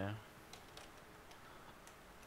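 Faint typing on a computer keyboard: a few scattered keystrokes as a short word is typed.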